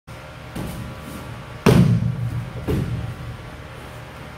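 An aikido partner's body landing on the training mat as he is thrown and taken down: one heavy thud a little under two seconds in, with lighter thuds about a second before and after it.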